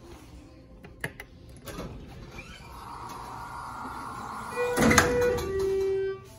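Schindler 330A hydraulic elevator's doors sliding open with a rising rumble and a loud clatter about five seconds in, over an electronic arrival chime of two falling tones, a higher one then a lower one. The doors are noisy, in need of some adjustment.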